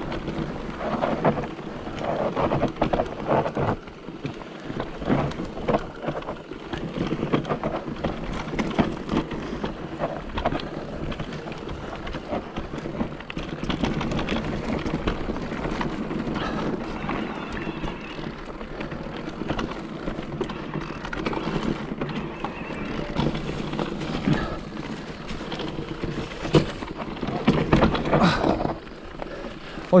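Electric enduro mountain bike descending a dirt singletrack: tyres running over dirt and pine needles, with constant irregular rattling and knocking from the bike over the rough ground.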